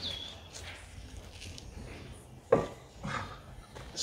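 A powder-coated metal lamp stand being handled and lifted out of the back of a van: a single short knock about two and a half seconds in and a softer knock just after, over a low steady outdoor background.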